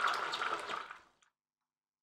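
Kitchen tap running into a small bowl of almonds, water splashing as the bowl fills, fading out about halfway through.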